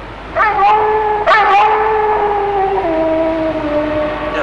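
Wolves howling: a long drawn-out howl, with a second joining about a second in, both held and sliding lower in pitch near the end.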